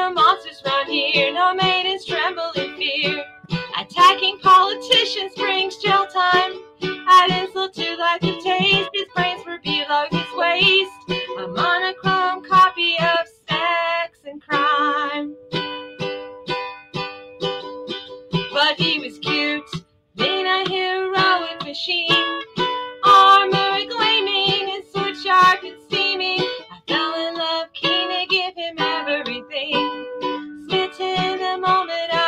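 A woman singing a song to her own accompaniment on a small lute-shaped plucked string instrument, the strings strummed in a steady rhythm under the melody, with two brief pauses.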